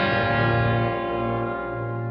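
Orchestral accompaniment of an opera aria holding a sustained chord that slowly fades.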